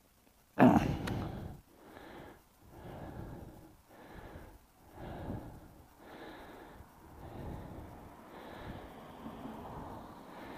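A sudden knock about half a second in, then soft breaths close to the microphone about once a second while the camera mount is handled.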